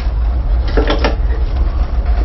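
A tugboat's twin diesel engines running with a steady, loud low drone while the boat manoeuvres, with one short sharp sound about a second in.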